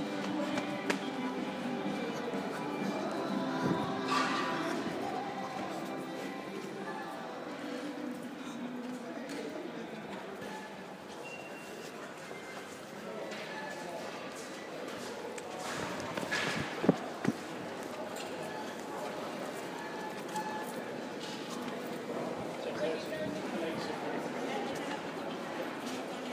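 Store ambience: background music playing and indistinct voices, with footsteps on a hard floor and two sharp knocks about two-thirds of the way through.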